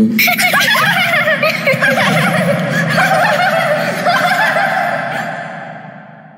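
A group of children laughing and chattering all at once, fading out over the last two seconds.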